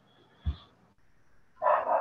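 A dog barking in the background, once near the end, with a brief soft thump about half a second in.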